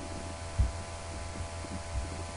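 Steady low electrical hum on the recording, with a short low thump about half a second in and a smaller one near the end.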